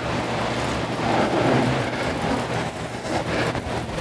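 Steady rustling, scraping noise from a lecturer's movements while he writes on a whiteboard, with no voice in it.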